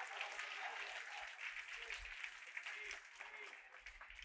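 Congregation applauding faintly after a line of the sermon, the clapping thinning out near the end.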